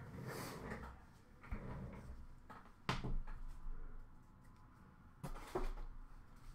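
Quiet room with a few scattered knocks and clicks of things being handled, the sharpest click about three seconds in.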